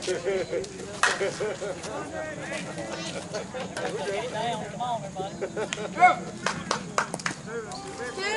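A softball bat cracks against the ball about a second in, amid shouting and chatter from players on the field, with the loudest shout about six seconds in.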